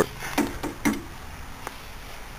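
Two light knocks about half a second apart in the first second, then a faint steady background.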